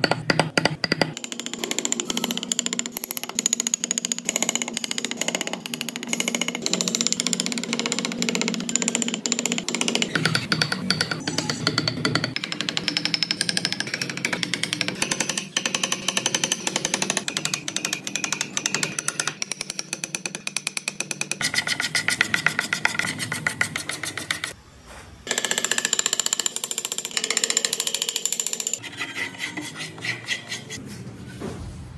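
Hand chisel and gouge carving into Fokienia wood: a fast, dense chatter of small cuts and scrapes, repeated without a break except for a few abrupt changes where the work jumps to another spot.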